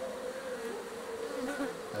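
Many African honeybees (Apis mellifera scutellata) buzzing around an opened hive: a continuous hum that wavers slightly in pitch.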